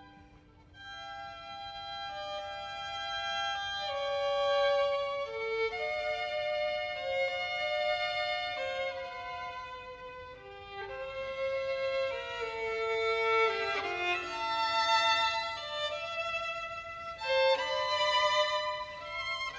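Unaccompanied solo violin playing a bowed melody, mostly one note at a time. It comes back in after a short pause about a second in, with a quicker run of notes a little past the middle.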